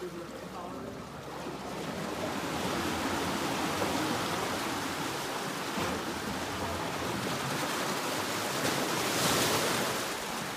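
Seiche waves set off by a distant earthquake surging and sloshing through a narrow rock-walled pool, the water crashing and bouncing off the rock walls. The rushing builds from about two seconds in and is loudest just before the end.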